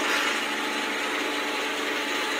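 A steady mechanical hum with a faint, even hiss; nothing starts, stops or changes.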